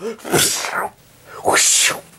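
A person making two breathy, hissing vocal noises, the second louder and sharper, as a mouth-made sound effect.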